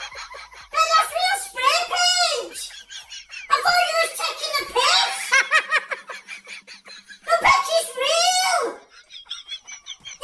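Only speech: a person talking excitedly in a high-pitched voice.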